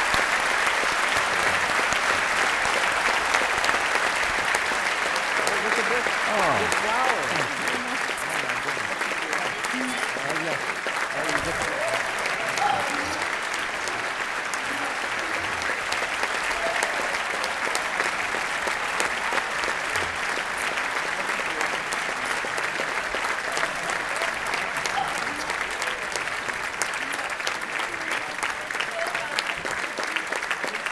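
Large theatre audience applauding steadily, the clapping easing slightly after the first several seconds.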